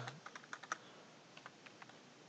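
Faint computer keyboard keystrokes: a quick run of light key clicks in the first second, then a few scattered ones.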